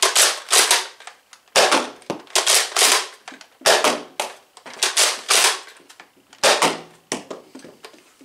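The bolt-action mechanism of a Nerf Rival Jupiter foam-ball blaster is worked over and over. It gives a string of loud, sharp plastic clacks, many in quick pairs or threes, spread across several seconds.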